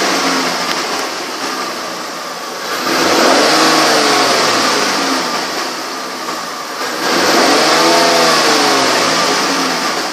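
2012 Lincoln MKS's 3.7-litre V6 running, revved up and let back down twice, once about three seconds in and again about seven seconds in, dropping back toward idle in between.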